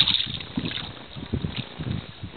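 Water splashing beside a boat as a hooked halibut thrashes at the surface. The splash fades within the first half-second, leaving irregular low water slaps against the hull and wind on the microphone.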